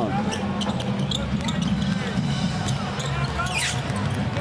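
Basketball being dribbled on a hardwood court: a run of sharp bounces over a steady low background of arena noise.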